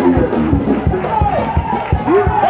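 Live gospel music with a quick steady drum beat, about four a second, and organ, with congregation voices mixed in.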